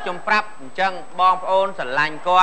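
A voice speaking loudly in short, separate syllables, about six in two seconds, with pitch rising and falling.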